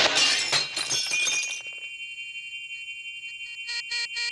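Cartoon sound effect of glass and metal debris shattering and tinkling down after a blast, thinning out over the first second and a half. A steady high electronic tone follows, and near the end it turns into a rapid pulsing beep, about five a second.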